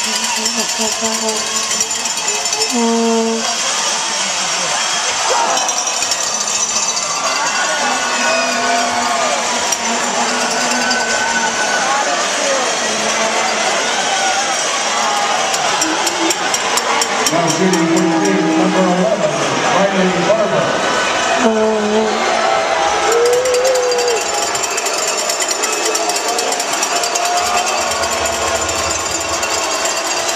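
Spectators in an ice arena: a steady din of many voices talking and calling out at once. A rapid, even rattling runs through it in the middle.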